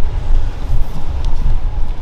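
Low, uneven rumble of a large drum fan running, with no voice over it.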